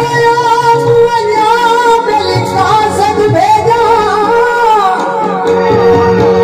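A male singer singing a Sufi folk song in long, wavering, ornamented held notes, accompanied by a steady harmonium drone and hand-drum beats.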